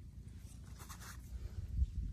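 Faint scratchy scuffs of footsteps on dry gravelly soil over a low rumble.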